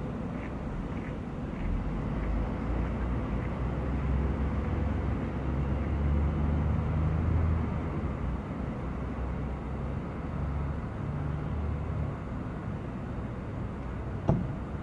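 Low, steady engine rumble of distant motor traffic. It swells for a few seconds in the middle, then eases off.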